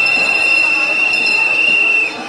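A long, loud, high-pitched whistle held on one steady note for about two seconds, sliding up briefly as it starts, over the murmur of a marching crowd.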